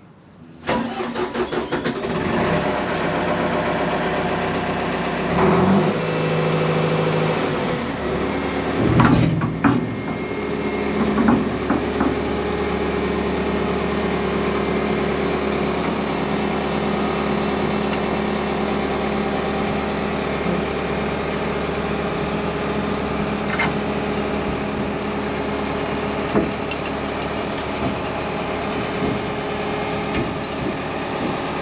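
Crawler excavator's diesel engine starting about half a second in, then running steadily, with a few louder surges in the first twelve seconds.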